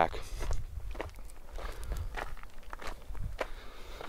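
Footsteps on rocky ground, a step about every half second, over a low rumble.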